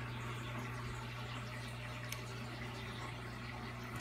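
Steady running-water sound with a constant low hum from a running saltwater reef aquarium and its circulation.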